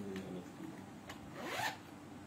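Cloth being handled: a chiffon dupatta and lawn fabric rubbing and rustling, with one short rasping swish about a second and a half in.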